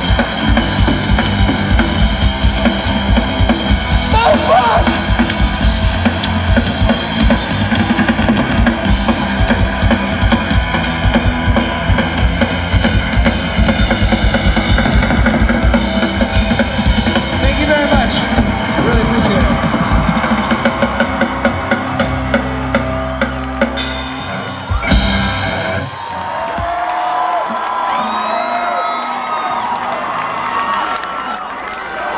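Live pop-punk band playing at full volume: electric guitars, bass, a fast pounding drum kit and shouted vocals. Near the end the band holds a last chord and finishes on a final crash, and the crowd then cheers and shouts.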